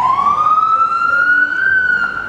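Loud emergency vehicle siren wailing on the street, its pitch climbing slowly and levelling off near the end.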